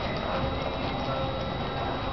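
Hoofbeats of an American Quarter Horse gelding moving at a slow gait on the dirt footing of an indoor arena, with faint music in the background.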